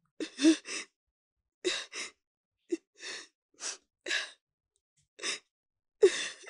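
A person's short breathy gasps and sighs: about ten quick ones in uneven clusters, each well under half a second.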